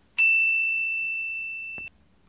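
A single bright bell-like ding that rings and fades slowly, then cuts off suddenly near the end: an edited-in chime sound effect marking the poster's reveal.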